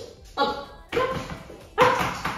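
Dalmatian barking: three short barks.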